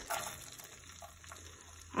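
Faint sizzle of butter melting in a frying pan as diced onion is tipped in from a plastic tub, a little louder in the first moment, with a few faint taps after it.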